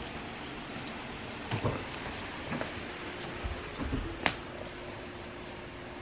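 Rain falling hard in a steady hiss, with a few scattered louder drops and one sharp tick a little past four seconds in.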